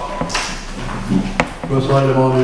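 A short pause in a man's speech, broken by a brief hiss and one sharp click, before his voice resumes near the end.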